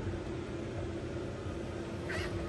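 Steady low background hiss with a faint hum underneath, with no distinct event: room tone of a large indoor space.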